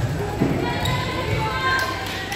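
A volleyball hits with one thud about half a second in, echoing in the gym. It is followed by short high squeaks and players' voices.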